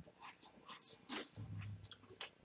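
Faint chewing and small mouth clicks from a man eating a tea-dunked shortbread finger.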